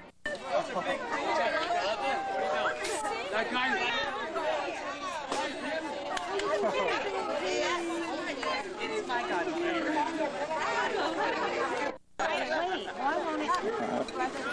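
Several people talking over one another, an unbroken mix of chatter. The sound drops out briefly at the very start and again about twelve seconds in.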